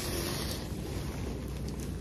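Rustling of a nylon bomber jacket's shell and quilted lining as it is handled and opened out: a steady, soft swishing.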